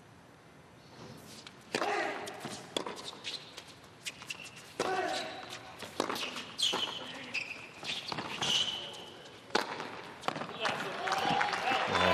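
A tennis point on a hard court: the ball is struck back and forth with racket hits about a second apart, with voice sounds among the shots. Crowd noise rises near the end as the point finishes.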